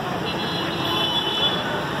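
Steady noise of traffic on a waterlogged street. A faint high steady tone lasts about a second near the start, and distant voices are faintly heard.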